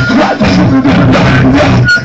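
A live rock band playing loud: electric guitar through an amplifier, with drums.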